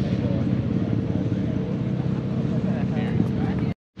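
A steady engine running at idle, with faint voices in the background. The sound cuts off abruptly near the end.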